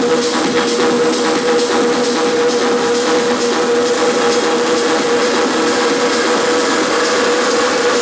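Techno played over a club sound system, in a stretch with the kick drum and bass dropped out: a held synth tone under steady, ratchet-like clicking percussion.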